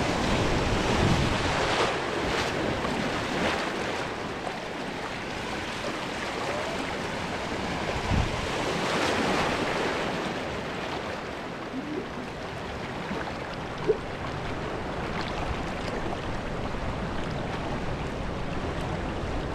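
Turbulent water rushing and splashing around a camera held at the surface of a wild-river water channel, with wind on the microphone. The water swells louder near the start and again around the middle. There is a single short, sharp knock a little past the middle.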